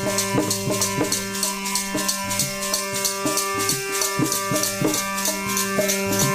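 Instrumental kirtan: a harmonium holds steady chords while several chimtas, long iron tongs with small jingles, are shaken and clashed in a fast, even rhythm. A hand drum beats along underneath.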